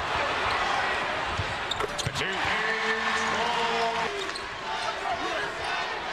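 Basketball arena crowd noise, with a basketball bouncing on the hardwood court. A steady held tone sounds for about two seconds in the middle.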